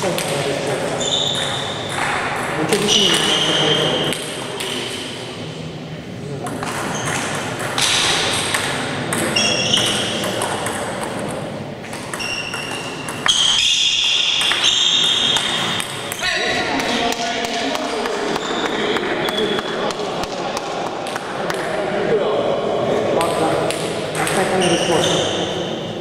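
Table tennis ball clicking off bats and the table during play, over a background of voices, with short high-pitched squeaks scattered through.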